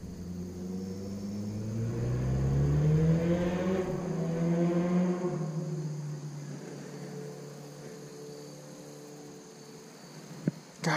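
A motor vehicle's engine goes past. It swells over about three seconds as its pitch climbs, dips in pitch about five seconds in, then fades away slowly.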